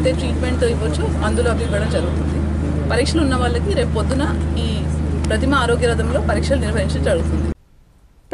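A woman speaking, over a steady low hum; both cut off abruptly about half a second before the end.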